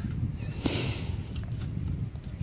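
Narrow steel digging spade working in a deep hole in soil, with faint scraping and a few small knocks, and a short breathy huff about half a second in.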